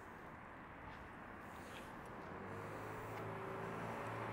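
Faint street traffic noise. From about two seconds in, a steady low engine hum from a vehicle grows slowly louder.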